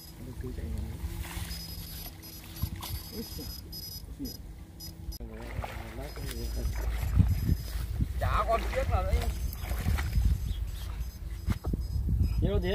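Water sloshing around the legs of a man wading knee-deep through a flooded rice paddy, over a steady low rumble. Indistinct voices come in briefly about halfway through and again a little later.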